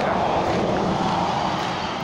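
A car passing on the road close by: a steady rush of tyre and engine noise that eases off slowly toward the end.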